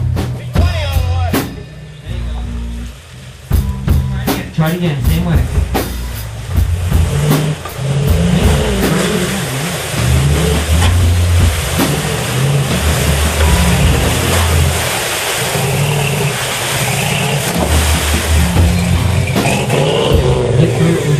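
A 4x4 truck's engine revving as it drives through a mud hole, its pitch rising and falling with the throttle. It becomes louder and steadier about halfway through.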